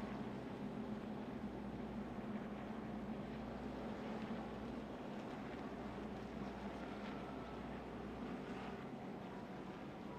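NASCAR Xfinity stock car's V8 engine, heard from inside the cockpit, running in a steady, unchanging drone with road and wind rumble, as when the field circulates slowly under a caution.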